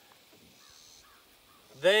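A quiet outdoor pause with a faint bird call about half a second in, then a man's voice resumes loudly near the end.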